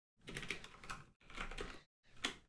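Computer keyboard typing: three short runs of keystrokes with brief pauses between, as a word is deleted and 'assert' is typed in.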